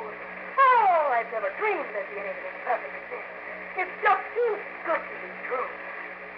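Speech from an old radio drama recording: voices talking over a steady low hum.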